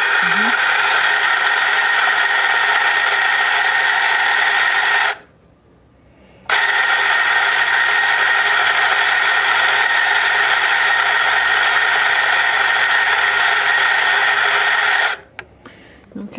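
Nuova Simonelli Grinta electric espresso grinder running as it grinds coffee into a portafilter, a steady motor-and-burr whir. It stops about five seconds in, pauses for a second and a half, then runs again and stops about a second before the end. This is a fresh dose ground after the setting was moved finer, the last shot having run too coarse.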